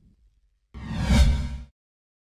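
A whoosh sound effect for a graphics transition, about a second long. It comes in suddenly after a moment of silence, swells and cuts off abruptly.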